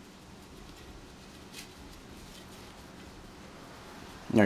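Faint rustling of braided cords and tassels being knotted by hand on a baton, with one brief soft rustle about a second and a half in, over a low steady room hum.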